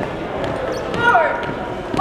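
Drill shoes of a marching color guard thudding on a hardwood gym floor over the murmur of voices in a large hall. A short, loud, high-pitched call or squeak comes about a second in.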